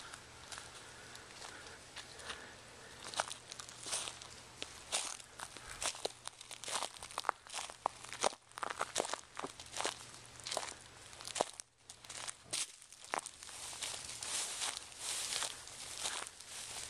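Irregular crunching and crackling of dry leaf litter and brush, sparse at first and growing dense from about three seconds in.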